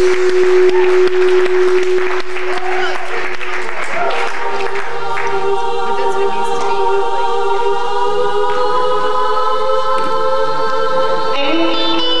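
Live rock band music. About five seconds in, the busy playing gives way to a long held chord, and the fuller band comes back in near the end.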